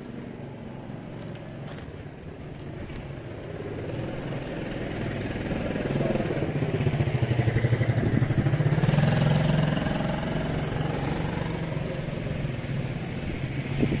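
A motor vehicle engine passing by, unseen: it grows louder over the first few seconds, is loudest about seven to nine seconds in, then eases off.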